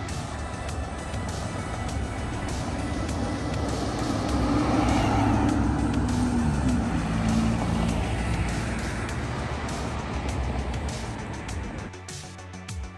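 A car passing by on the street, its noise swelling from about four seconds in and fading over the next few seconds, under background music.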